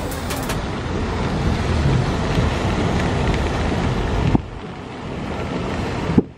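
Steady rushing wind and road noise from a moving vehicle, with heavy low rumble of wind buffeting the microphone. It drops abruptly with a click a little past four seconds in, then builds again.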